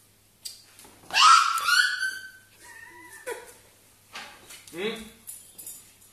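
A dog's high-pitched whining cry about a second in, sliding down in pitch and then held for about a second, followed by fainter, shorter whines.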